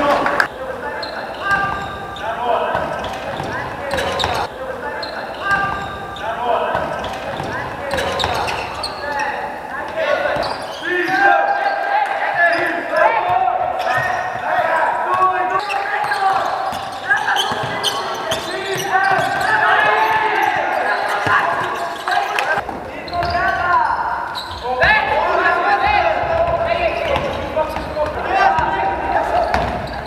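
Live basketball game sound in a large gym hall: a basketball bouncing on the court, scattered sharp knocks, and players shouting and calling out throughout.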